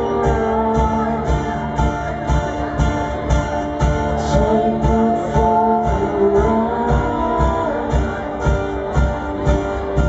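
A live indie band plays an instrumental stretch of the song: plucked-string chords over held notes, with an even beat of about two strokes a second.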